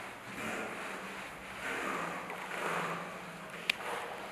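Cloth rubbing across a wooden school desk, a swishing noise that swells and fades with each wiping stroke, with one sharp click near the end.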